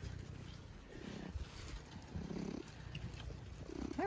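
Domestic tabby cat purring right against the microphone, with its fur brushing over it in a few soft rubs.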